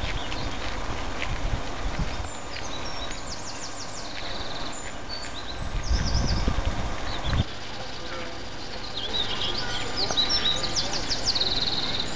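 Songbirds singing in the surrounding scrub: quick runs of high notes and trills, heard about three seconds in and again near the end. Beneath them is a low rumble on the microphone that swells for a second or so in the middle.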